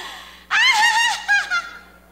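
A woman draws a quick breath, then laughs loudly in a high, wavering voice for about a second and a half.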